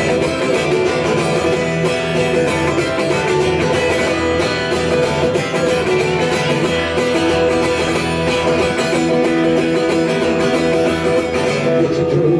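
Acoustic guitar strummed steadily and hard, an instrumental passage of a solo punk song played live with no vocals.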